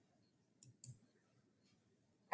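Two quick, faint clicks about a quarter of a second apart, from the computer as the lecture slide is advanced; otherwise near silence.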